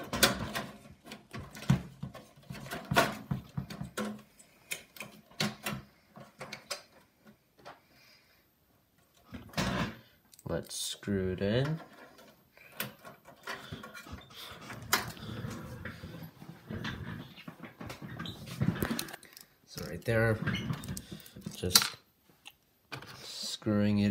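Clicks, knocks and scraping of computer hardware being handled as a hard disk is fitted back into a desktop PC case, with cloth rubbing against the microphone. A short vocal sound comes about halfway and again near the end.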